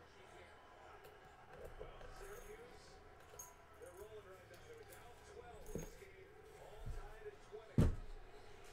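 Key working a small padlock on a wooden crate, with light metallic clicks and jingles. A single sharp knock near the end as the lock comes free and the crate is handled.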